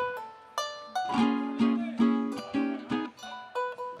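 Plucked strings of a llanero band playing an instrumental passage: a run of picked melody notes with sharp strokes, moving in clear pitch steps.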